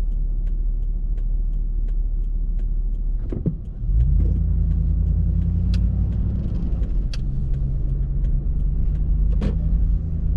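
Car heard from inside the cabin: a steady low engine and road rumble with a turn signal ticking about twice a second while it waits at a light. About three and a half seconds in the ticking stops and the rumble grows louder as the car pulls away through a turn.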